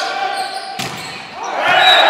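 A volleyball struck hard once, a sharp smack echoing in a sports hall, followed about halfway through by loud shouting and cheering swelling up as the rally ends in a won point.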